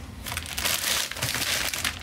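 Clear plastic bags around stored shoes crinkling and rustling as they are rummaged through and lifted out of a cardboard storage box, a continuous crackle for most of the two seconds.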